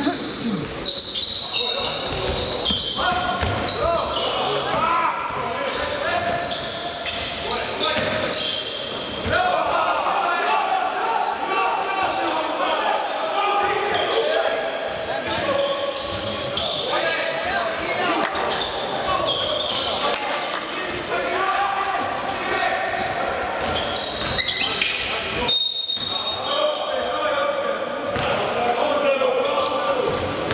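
Basketball bouncing on a hardwood court, with players' shouts and sneaker noise echoing through a large sports hall.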